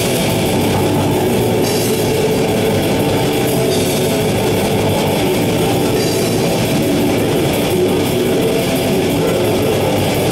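Metal band playing live: loud electric guitars and bass over a drum kit, continuous and dense throughout.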